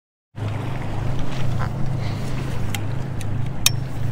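A boat's electric trolling motor running with a steady low hum, over water and wind noise, with a couple of sharp clicks near the end.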